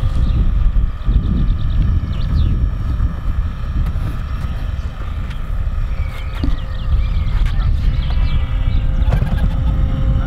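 Wind buffeting the microphone in a loud, steady rumble, with the thin, steady whine of a small electric model-aircraft motor and propeller flying overhead.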